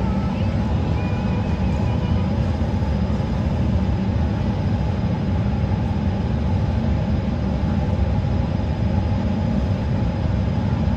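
Steady cabin noise of an airliner in flight: an even, deep rumble that does not change.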